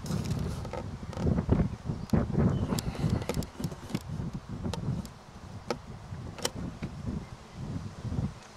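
Uneven low rumbling buffeting on the microphone, with about half a dozen sharp clicks scattered through it.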